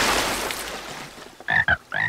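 A splash of water that fades over the first second, then cartoon frog croaks: short calls in quick pairs starting about a second and a half in.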